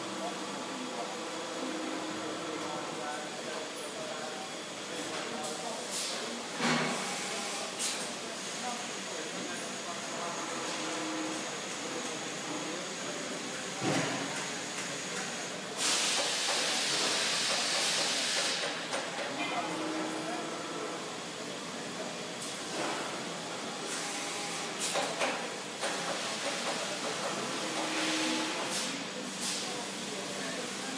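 Akira-Seiki RMV700 vertical machining center running behind its enclosure, with coolant spraying and a steady machine hum broken by occasional sharp clicks and knocks. About halfway through, a loud hissing rush lasts around three seconds.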